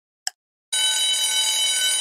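Quiz countdown-timer sound effect: one last short tick, then an alarm-like ringing tone starts about a second in and holds steady, marking the timer reaching zero.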